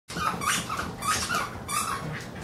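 Carolina Dogs making play noises: a quick series of about six short sounds in two seconds.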